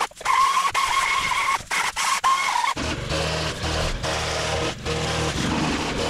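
Gas chainsaw running at high revs with a steady high whine while cutting brush, briefly interrupted a few times, then settling to a lower, rougher engine note about three seconds in.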